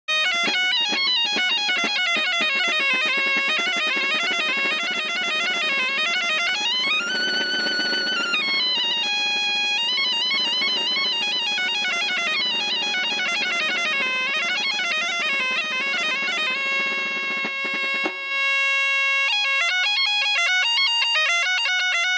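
Bagpipe (gaita) playing a fast muñeira dance tune over a steady drone. About eighteen seconds in, the running melody gives way to long held notes.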